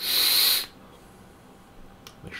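A short, sharp hiss of air drawn through an e-cigarette rebuildable tank atomizer as the vaper takes a draw, lasting about half a second.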